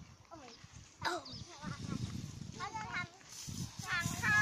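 Voices talking in several short, high-pitched phrases, with pauses between them.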